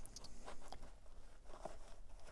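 Faint rustling and a few soft ticks of gloved hands handling a cycling shoe's upper and strap.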